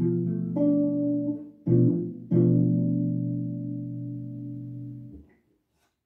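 Ibanez archtop guitar playing a B minor seven flat five (B half-diminished: B, D, F, A) chord at the seventh-fret position. The chord's notes sound in a few attacks over the first two seconds, then the full chord is struck once more and left to ring for about three seconds until it dies away.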